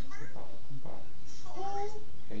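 Short high voice sounds, then near the end one drawn-out, meow-like call that rises and then holds.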